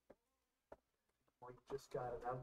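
Near silence with a couple of faint clicks, then a person's voice starts about three quarters of the way through.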